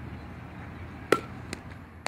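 A softball being hit on the ground to a fielder: one sharp knock with a short ring about a second in, the crack of the bat, then a fainter knock about half a second later as the ball bounces, over steady low background noise.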